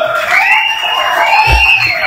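A man's voice over a public-address loudspeaker, drawing out two long sing-song syllables that each rise and then fall.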